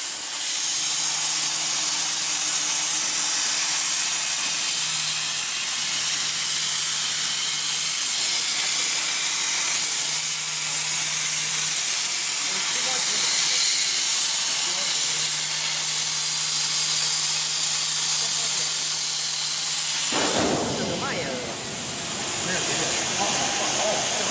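CNC plasma cutter torch cutting 10 mm mild steel: the plasma arc gives a loud, steady hiss, with a faint steady hum underneath. The arc cuts off suddenly about four seconds before the end, when the cut is finished.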